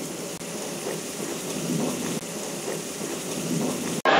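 Steady rain falling, an even hiss without a break.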